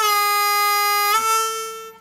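A G diatonic harmonica's 4-hole draw note bent down a half step: the note dips in pitch right at the start, holds bent for about a second, then rises back to the unbent pitch and fades out near the end.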